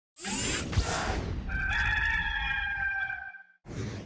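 Intro sound effect: a loud whoosh, then a rooster crowing in one long call of about two seconds, ending with a brief second whoosh just before the end.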